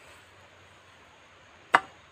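Faint background, then a single sharp knock about three-quarters of the way through.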